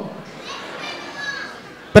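Faint chatter of several voices in a large hall, some of them high-pitched like children's. A man's voice through a microphone comes in right at the end.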